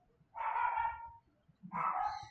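Two short pitched vocal calls, each under a second long, about a second apart.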